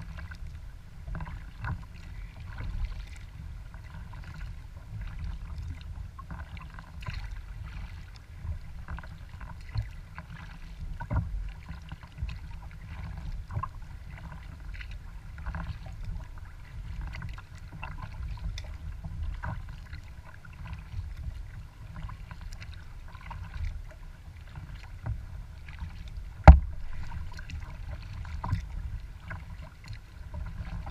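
Water splashing and lapping irregularly against a kayak hull as it moves through choppy lake water, over a steady low rumble. Late on, one sharp knock stands out as the loudest sound.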